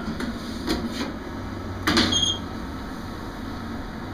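Roland wide-format sign cutter/plotter powering up: a few light mechanical clicks, a louder knock with a brief metallic ring about two seconds in, then a steady low hum from the running machine, a sign that the auction-bought plotter works.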